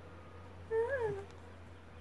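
Small dog giving one short whine that rises and falls in pitch, about a second in, while its belly is being rubbed.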